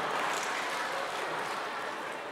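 Audience noise from a congregation in a hall, a steady wash of crowd reaction that slowly fades.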